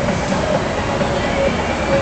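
Steady din of a busy casino and hotel lobby: constant crowd murmur and background noise, with faint short tones coming and going.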